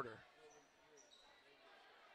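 Faint basketball game sound from a hardwood court: a ball bouncing, with a few short, high squeaks.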